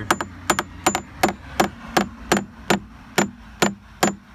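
Claw hammer tapping steadily on the fiberglass transom of a 1985 Grady-White boat, about three light strikes a second, sounding it out for voids. This is the spot suspected of rot, which the owner thinks could be a problem.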